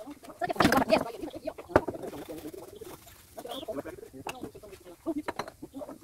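A bird calling with low, wavering notes, over scattered light clicks and knocks of handling at a kitchen sink.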